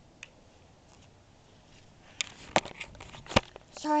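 Knocks and rustling of a handheld camera being picked up off the ground and handled: a few sharp knocks, the loudest near the end.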